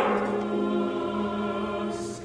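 Baritone voice holding a steady final note of an operatic Broadway duet, softening and ending near the close.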